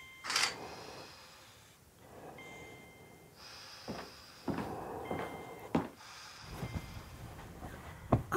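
Hospital-room sound design: a patient monitor beeping, a short high beep about every two and a half seconds, under soft breathing. A brief rushing whoosh comes just after the start and is the loudest sound, and a few soft knocks follow later.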